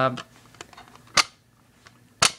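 A single sharp click about a second in, against quiet room noise.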